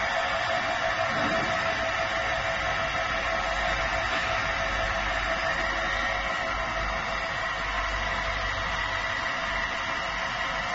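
Pass-through industrial washing and drying machine running: a steady, even machine noise with a constant whine over a low rumble.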